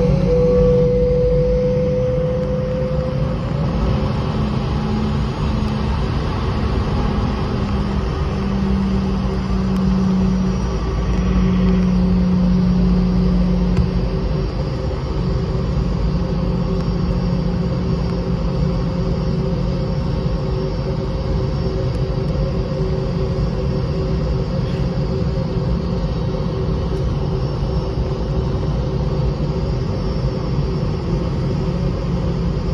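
Cabin noise of a Boeing 717-200 taxiing: a steady rumble from its two rear-mounted Rolls-Royce BR715 turbofans at low taxi power, with a steady hum and a thin whine that dips slightly in pitch in the first few seconds.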